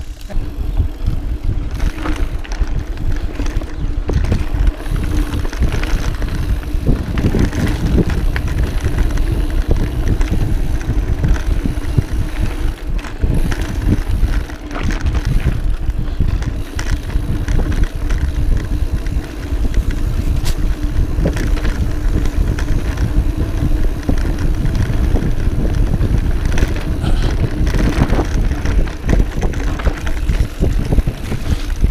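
Mountain bike riding down a dirt singletrack: a continuous low rumble of the tyres over dirt and roots, with frequent short knocks and rattles from the bike as it rides over the bumps, and wind on the microphone.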